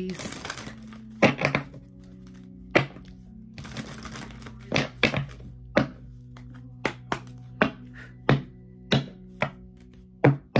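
A deck of oracle cards being shuffled by hand: a short rustle of riffled cards at the start, then about a dozen sharp, irregular card clicks and taps. Soft sustained background music runs underneath.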